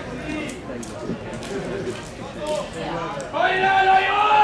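Voices talking and calling out, with one long, loud, held call beginning near the end.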